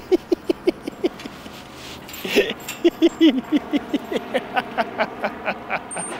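A man laughing hard in quick bursts, about six a second, pausing briefly and then laughing again, higher. About two seconds in there is a clank of the chained iron gate he is pulling on.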